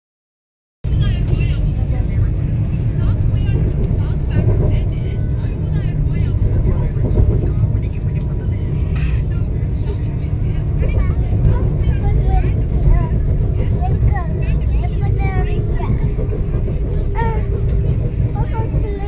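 Steady low rumble of a Vande Bharat express train running, heard from inside the passenger coach, with passengers' voices talking over it.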